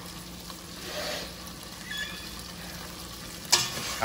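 Ground beef sizzling steadily in a steel pot on the stove. One sharp knock near the end as the stirring utensil strikes the pot.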